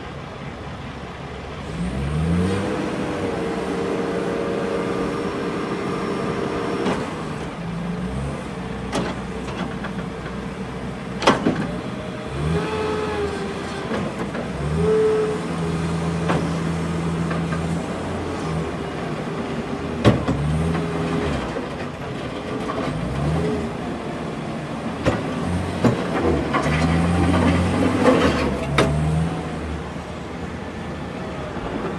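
Caterpillar 242B skid steer's diesel engine coming up to working revs about two seconds in, then running with its pitch stepping up and down as the machine drives and works the loader arms, with a higher whine at times. A few sharp knocks break through, the clearest near the middle.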